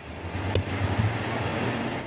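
A vehicle passing along the street: a steady rushing of tyre and engine noise that builds over the first half second, picked up by a body-worn camera's microphone.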